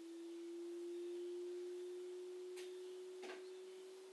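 A faint, steady electronic pure tone: a single note with no overtones, drifting slowly upward in pitch. Two soft clicks come near the end.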